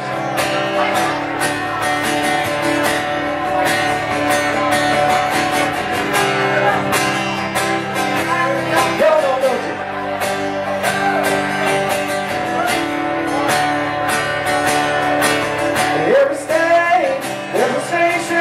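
Live country band music led by a strummed acoustic guitar, with steady held notes under the regular strokes and a few sung phrases near the end.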